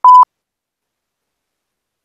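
A single short, loud electronic beep: one steady pure tone about a quarter of a second long at the very start, then dead silence.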